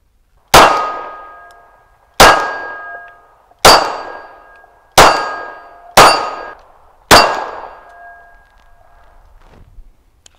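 Six 9mm shots from a Glock 19X pistol fired about one to one and a half seconds apart, each followed by the ringing of a steel target plate being hit. This is a magazine emptied in one string of fire.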